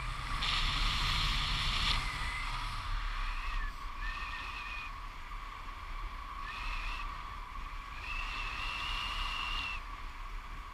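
Airflow rushing over the action camera's microphone in tandem paraglider flight, with a louder rush starting about half a second in and lasting about a second and a half. A steady high whine runs underneath, and high whistling tones come and go, the last one held longer near the end.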